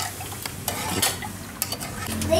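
Fish-sauce dipping sauce being stirred in a metal pot: the liquid swishes, with a few light clicks against the pot.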